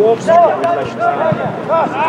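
Men's voices shouting calls across a football pitch: one burst of high, rising-and-falling shouts at the start and another near the end.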